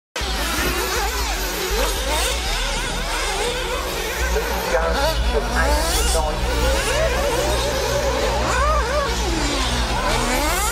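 Several 1/8-scale nitro RC buggies' small two-stroke glow engines buzzing at high revs, their pitches rising and falling as they accelerate and brake around the track, with a steady low hum underneath.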